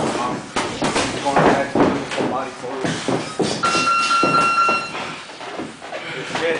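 Boxing sparring: repeated sharp knocks of gloved punches and footwork on the ring canvas, with voices in the background. About halfway through, a steady high electronic beep holds for roughly a second and a half.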